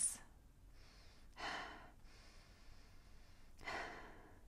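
A woman's breaths, two of them, each about half a second long: the first about a second and a half in, the second near the end.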